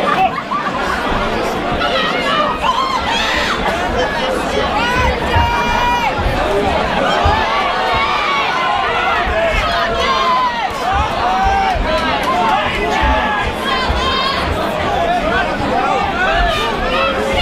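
A crowd of spectators shouting and chattering over one another, many voices at once with no single speaker standing out.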